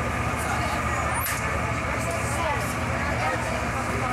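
Indistinct chatter of many voices from a milling crowd, over a steady low hum.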